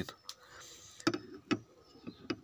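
Two sharp clicks, about a second and a second and a half in: handling noise on the open plastic housing of a garden shredder.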